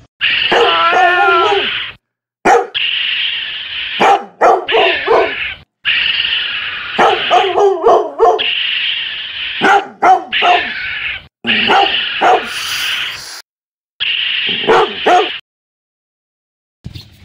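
Dog-like barking and whining, loud, in a string of segments that start and stop abruptly with short silent gaps between them.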